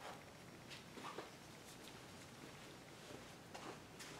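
Near silence: room tone with a few faint light taps and handling noises.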